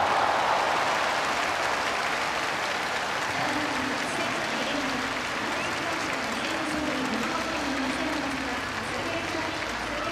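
Stadium crowd applauding a diving defensive play, swelling at the start and then holding steady, with voices faintly underneath.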